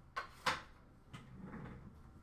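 Two short clicks or taps about a third of a second apart, the second louder, from trading cards and packs being handled at a counter.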